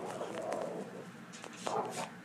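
Toy Fox Terrier growling low at a dog on the television, a soft rumbling growl in the first second with a short sound near the end.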